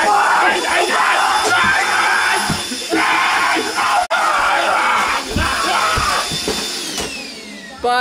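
Loud music with people yelling and screaming over it; the music fades away near the end.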